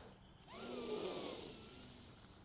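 A man's slow, faint inhale during a stretch, an airy rush with a faint wavering whistle in it, starting about half a second in and fading away.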